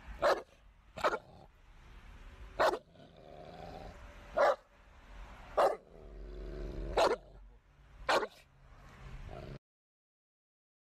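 American Bully dog barking out of an open car window, seven loud single barks at uneven gaps of one to two seconds. The sound cuts off suddenly near the end.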